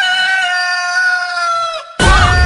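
A chicken's long drawn-out call in a novelty chicken song: one held, pitched note that sinks slightly and breaks off shortly before the end, just as another call begins.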